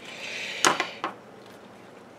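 Leaves rustling, then two sharp snips, the first about two-thirds of a second in and the second a moment later: scissors cutting through a watermelon peperomia leaf stem.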